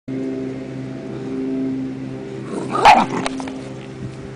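A dog barks once, loud and sharp, about three seconds in, as dogs play-fight; a steady low hum runs underneath.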